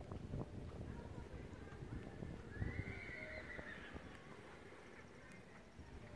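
A horse neighs once, a faint call lasting about a second, beginning a little over two and a half seconds in, over low rumbling noise.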